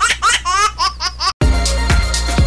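A cartoon-style laughter sound effect, a quick run of high-pitched "ha-ha-ha" about five a second over music, cuts off suddenly a little over a second in. Then an electronic music sting with heavy bass begins.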